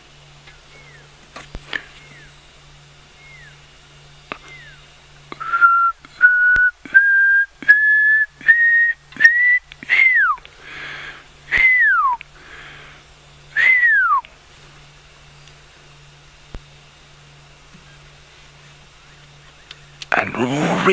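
Pearl-spotted owlet call: a few faint short falling notes at first, then a loud series of about eight short whistles climbing steadily in pitch, ending in three long whistles that slide down.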